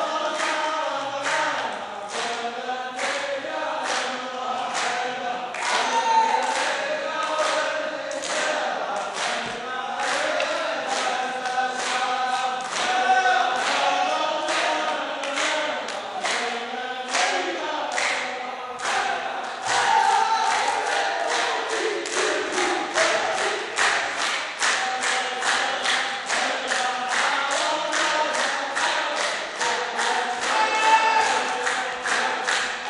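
A group of men chanting a poem's verse in unison, with hand claps keeping a steady beat about twice a second that quickens in the second half.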